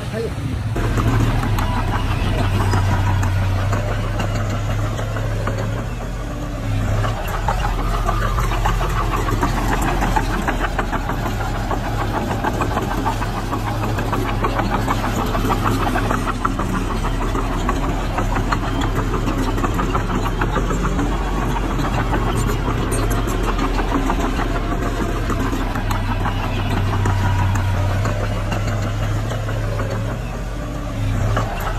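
Diesel engine of heavy earthmoving machinery, a dump truck and a small crawler bulldozer, running steadily at an even level throughout.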